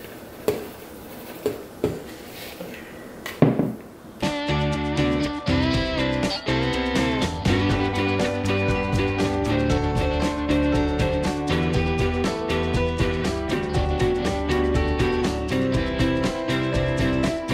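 A few short knocks of mixing bowls as dry ingredients are tipped into a stand mixer's steel bowl, then, about four seconds in, background music led by guitar starts and carries on steadily.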